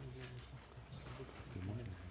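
Faint clicks of a laptop keyboard and trackpad in a quiet hall, with a low murmur of voice.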